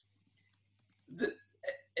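A man's hesitation in mid-sentence: about a second of near silence, then two brief hiccup-like catches of the voice in quick succession just before he speaks again.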